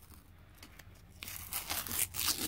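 Masking tape being peeled off a painted model locomotive body, a ripping, crackling sound that starts a little over a second in.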